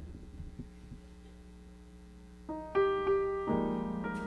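Steinway grand piano starting a solo introduction: a couple of seconds of near-quiet, then single notes entering about two and a half seconds in, followed by fuller chords.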